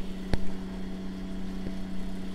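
Bedini pulse motor with a ferrite-magnet rotor running at speed, giving a steady low hum. A single sharp click comes about a third of a second in.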